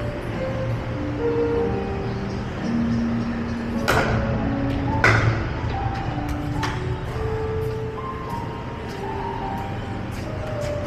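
Pickleball paddles striking the plastic ball, with sharp pops about four and five seconds in and a lighter one near seven seconds, over background music of held notes.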